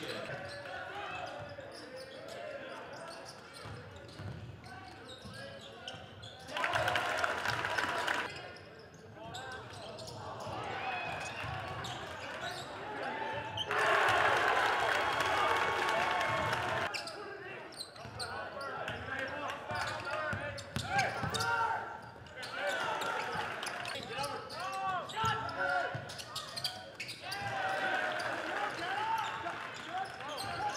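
Basketball game sound in a gymnasium: a ball dribbled on the hardwood court, sneakers squeaking, and voices from players and spectators. There are two louder spells of voices, about seven seconds in and again about fourteen to seventeen seconds in.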